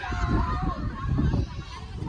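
Wind rumbling on the microphone, with faint high calls in the distance that rise and fall in pitch.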